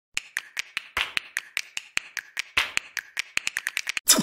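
A run of sharp, evenly spaced clicks, about five a second, quickening in the last second, with two heavier clicks among them.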